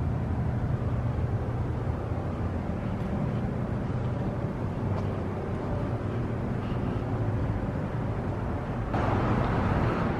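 Steady outdoor background noise with a low droning hum, getting a little louder about nine seconds in.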